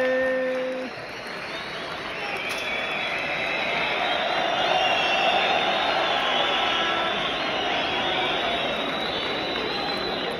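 Stadium crowd of football supporters chanting and cheering, a dense mass of many voices. A loud long held note cuts off just under a second in.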